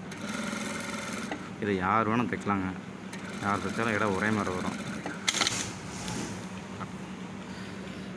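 Singer sewing machine stitching neck tape onto a jersey collar, running over a steady hum, with a person's voice talking over it twice and a short sharp hiss about five seconds in.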